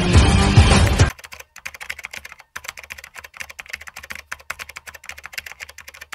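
Background music that cuts off suddenly about a second in, followed by a much quieter, rapid run of computer-keyboard typing clicks from the end card's sound effect.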